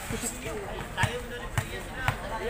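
Basketball dribbled on a concrete court: a few sharp bounces about half a second apart, starting about a second in.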